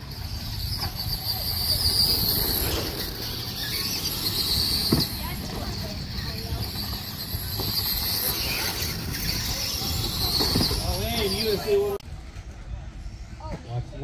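Radio-controlled monster trucks racing on a dirt course, their electric motors whining high and rising and falling in pitch with the throttle. The sound stops abruptly about twelve seconds in.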